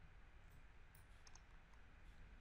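Near silence: room tone with a few faint, scattered computer-mouse clicks.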